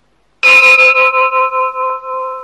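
A struck metal bell rings out once about half a second in, loud at the strike and then ringing on with several steady tones that waver quickly in loudness as they fade, marking a pause between sections of Buddhist chanting.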